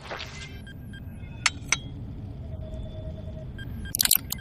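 Cartoon laboratory sound effects: a short swish, then two sharp glassy clinks about a second and a half in, over soft repeating electronic blips and a low hum of lab equipment.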